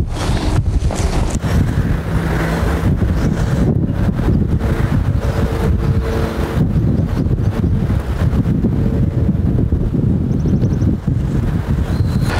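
Wind buffeting the microphone, a loud, steady rumble.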